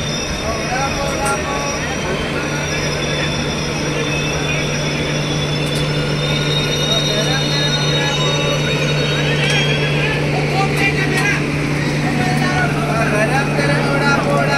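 Steady low hum of electric trains standing at a station, with a faint high whine above it and people's voices in the background, growing a little louder near the end.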